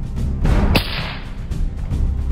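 A single rifle shot, one sharp crack a little under a second in, over background music.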